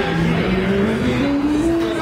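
An amplified instrument plays a slow run of held notes, climbing step by step in pitch over about two seconds, with a gritty, engine-like tone.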